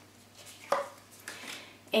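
A tarot card laid down on a wooden tabletop: one sharp tap about two-thirds of a second in, with faint card-handling sounds around it.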